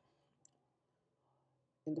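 Near-silent room tone with a single faint, short click about half a second in.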